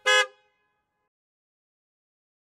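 A short vehicle-horn toot, a single beep of about a quarter second, right at the start.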